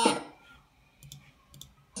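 Two faint clicks about half a second apart, typical of a computer mouse clicking.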